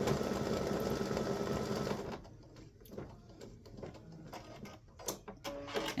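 Baby Lock Visionary embroidery machine running steadily as it stitches dots on a fabric patch, then stopping abruptly about two seconds in. A few faint clicks follow.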